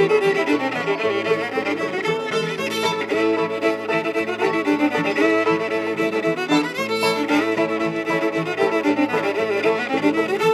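Old-time fiddle playing a quick dance tune, a steady stream of bowed notes.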